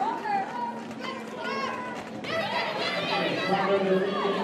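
Several high voices shouting and calling over one another in a large hall, as roller derby skaters in a pack call out to each other.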